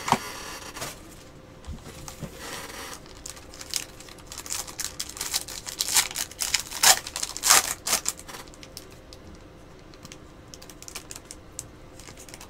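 Foil trading-card pack wrapper being torn open and crinkled in the hands: a run of quick, sharp crackles, loudest in the middle, over a faint steady hum.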